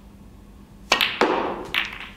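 Snooker cue striking the cue ball about a second in, followed by sharp clicks of balls colliding as the cue ball splits the pack of reds.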